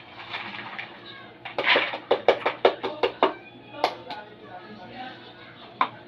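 Soaked mung beans and their soaking water being drained into a plastic strainer: a soft pour, then a quick run of rattling shakes, about four a second, and a couple of single knocks.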